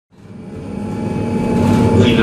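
Alstom Citadis tram running, heard from on board: a steady rumble of motors and wheels with a few held hum tones, fading in from silence.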